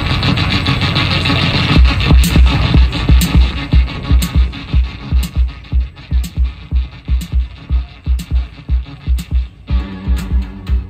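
Live rock band's song intro through a festival PA: a sustained electric guitar wash, then, a couple of seconds in, a deep bass pulse starts, repeating about two and a half times a second, with a light high click about once a second.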